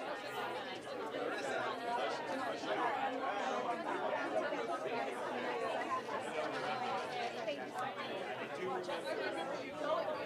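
Crowd chatter: many people talking at once in overlapping conversations, at a steady level.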